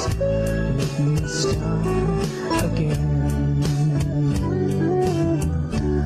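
Instrumental passage of a Christian worship song: guitar over sustained bass and a steady beat of about three strokes a second.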